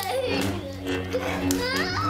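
A small child's voice squealing and babbling excitedly, rising to a high squeal near the end, over steady background music, with a few sharp clicks.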